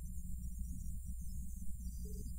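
Low steady hum and rumble with faint hiss: room and electrical background, with no clear music or speech.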